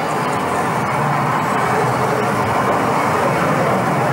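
Audience murmuring: a steady blur of many voices talking at once, with no single speaker standing out.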